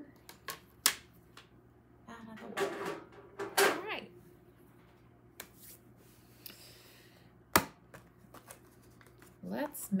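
Scattered clicks and knocks of plastic craft supplies being handled and set down on a craft mat, two of them sharp and loud, about a second in and near the end, with a short sliding rustle between them.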